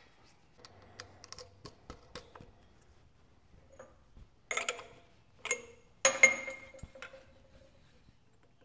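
Metal parts clinking while the pulleys and V-belt on a tool and cutter grinder's drive are handled: a few faint ticks, then three louder sharp clinks in the second half, the last one ringing for about a second.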